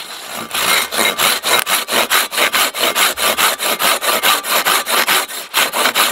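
Silky Bigboy 2000 folding hand saw cutting through a small log in quick, even back-and-forth strokes, with a brief pause near the end. The saw cuts mainly on the pull stroke.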